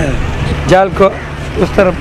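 Voices speaking in two short phrases over a steady low rumble.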